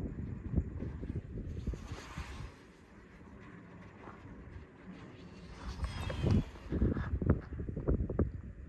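Wind buffeting the microphone in gusts, a low rumbling noise that eases off for a few seconds in the middle and picks up again near the end.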